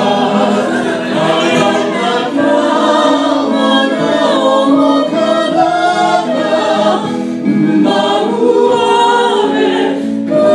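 A group of women singing together in harmony into microphones, holding long notes, with acoustic guitars playing along underneath.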